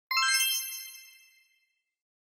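Bright chime sound effect for an intro logo: a quick cluster of bell-like notes struck almost together just after the start, ringing out and fading away over about a second and a half.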